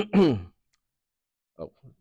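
A man clears his throat and lets out a short sigh that falls in pitch, followed by about a second of quiet.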